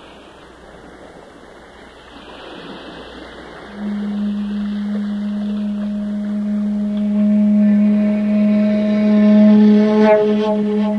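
A shakuhachi (Japanese bamboo flute) enters about four seconds in on one low, long-held note that swells toward the end, over a steady hiss of running water.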